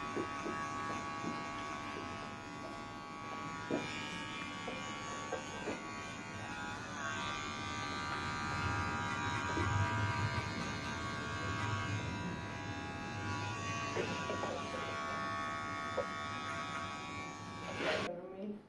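Electric hair clippers buzzing steadily as they are run over a comb to cut the short hair of a nape undercut, with a few faint ticks along the way.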